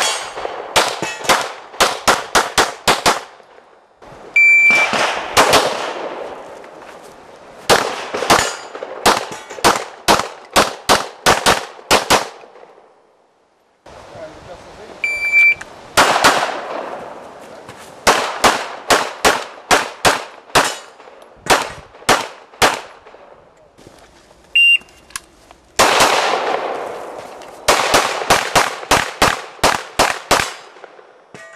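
Rapid strings of pistol shots, several a second, fired during practical-shooting stage runs, broken into separate runs by sudden cuts. Before two of the strings an electronic shot timer gives its short high start beep, and the shooting begins about a second later.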